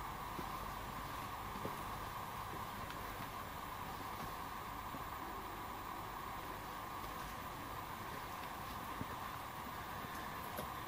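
A heater running steadily, with a couple of faint knocks.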